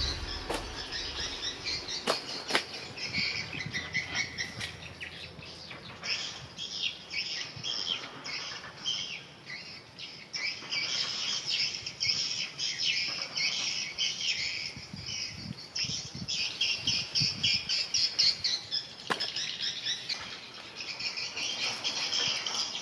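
An outdoor chorus of chirping birds and insects running densely throughout, with a few sharp clicks and some low rustling from handling the banana stem, the banana leaves and the fish.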